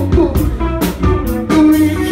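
Live rock band playing loudly, electric guitar and bass guitar over a steady beat.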